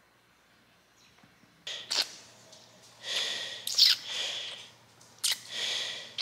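An adult sucking milk from a baby-bottle nipple, with sharp slurps and noisy breaths in several bursts after a quiet first couple of seconds.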